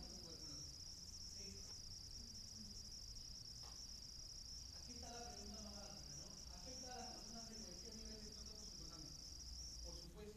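A steady, high-pitched whine runs throughout and cuts off at the end, over a faint, distant voice lecturing in a large hall during the second half.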